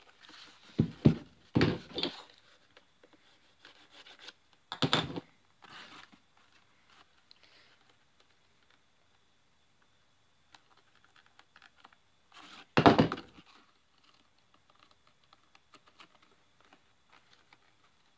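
Leather holster being pressed and handled over a workbench: several short, dull thumps in the first few seconds and another, as loud, past the middle, with soft leather rustling in between as the freshly glued toe plug is pushed flush.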